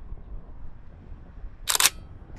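A single camera shutter click, short and sharp, near the end, over a low background rumble.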